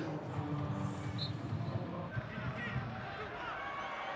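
Low background ambience with faint, indistinct voices.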